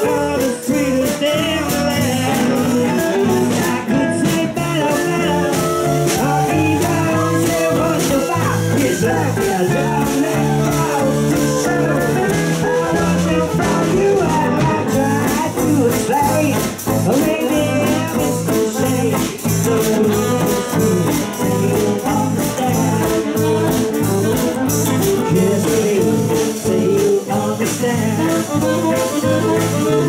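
Small swing-jazz band playing live: electric guitar and fiddle over a steady beat.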